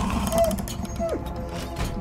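Low, droning trailer music with a quick run of mechanical clicking about half a second in, and two brief tones, the second falling in pitch.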